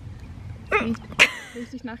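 A young woman's short giggles and sharp breaths through the nose, with one sudden snort-like burst a little past the middle.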